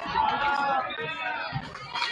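Raised voices shouting and calling out in a school gymnasium, over crowd chatter, echoing in the large hall.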